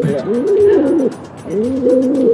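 Pigeons cooing: several low, wavering coos that rise and fall, with a short pause just after a second in.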